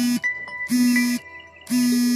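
A buzzy electronic tone sounding three times at the same pitch, about once a second, each lasting about half a second, with a faint high tone held between them.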